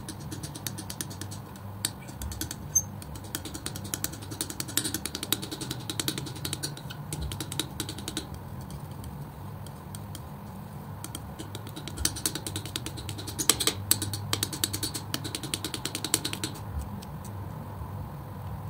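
Metal palette knife mixing and spreading thick acrylic paint on a board: dense runs of small clicks and wet smacks in bursts, thinning out in the middle, over a steady low hum.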